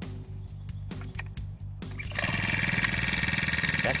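A few light clicks, then a propane-fuelled four-stroke string trimmer engine starts about two seconds in and runs steadily, very quiet for a trimmer.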